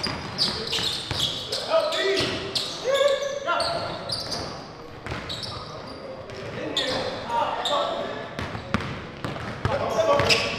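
A basketball being dribbled on a hardwood gym floor, a run of sharp bounces, with players' voices calling out over it.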